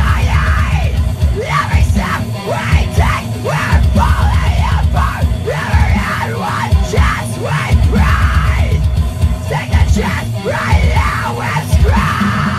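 Harsh screamed metal vocals into a handheld microphone over a loud deathcore backing track of distorted guitars, bass and heavy drums.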